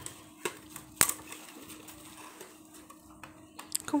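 Scattered plastic clicks and taps from a wifi router and its hinged antennas being handled on a table, with one sharp click about a second in and a few more near the end. A faint steady hum runs underneath.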